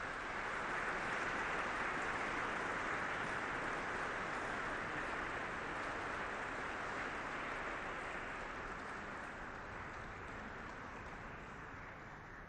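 Audience applauding, a steady clapping that swells within the first second and slowly fades toward the end.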